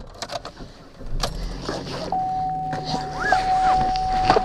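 Sounds inside a car as it is started: a few clicks and rattles, then a low engine rumble that comes up about a second in. About two seconds in, a steady high electronic tone from the car begins and holds.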